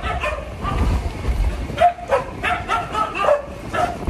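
Dogs barking at the car, a run of short barks mostly in the second half, set off as soon as the car starts rolling. A low rumble of the moving car runs underneath.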